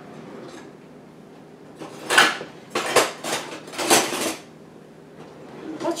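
Kitchen utensils clattering and clinking in three short bursts, from about two seconds in to about four and a half seconds in, as a spatula is picked up.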